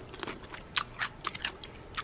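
A person chewing a mouthful of food eaten from a fork, heard as a string of short, irregular crunches.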